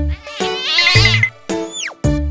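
A wavering cartoon cat yowl sound effect over upbeat children's instrumental music with a steady beat, followed near the end by a quick falling whistle.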